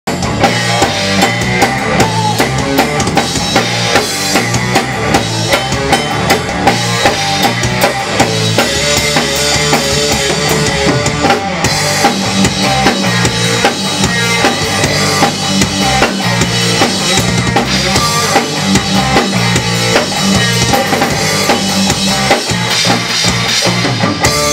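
Drum kit played with a steady, driving rock beat: kick drum, snare and cymbals, loud and close, over other pitched band instruments in an instrumental intro.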